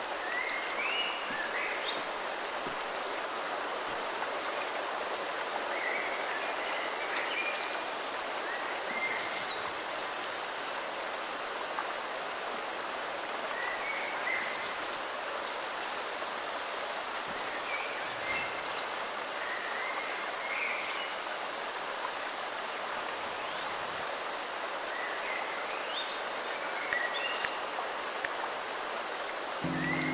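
Steady rushing of water from a rocky stream tumbling over small cascades.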